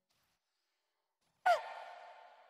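Near silence, then about one and a half seconds in, a sudden sound effect with a quick downward swoop in pitch that leaves a ringing tail, fading slowly.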